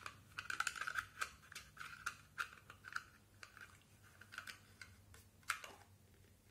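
Small plastic clicks and ticks from the housing of a Livarno Living battery LED puck night light as its back cover is fitted and closed by hand: a quick run of clicks in the first three seconds, then scattered ones and a sharper click near the end.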